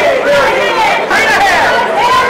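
Several voices talking over one another, a loud babble of overlapping speech with no single clear speaker.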